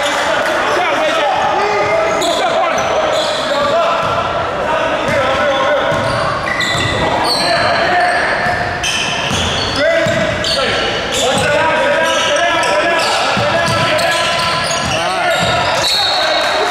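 Indoor basketball game: a ball bouncing on the court and players and onlookers calling out and talking, echoing in a large hall. Short high squeaks and sharp knocks are scattered through it.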